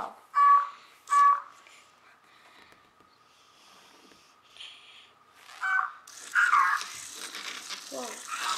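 Novie interactive robot toy giving two short electronic beeps about half a second and a second in, then more electronic chirps and gliding sound effects over a rushing noise in the last two seconds.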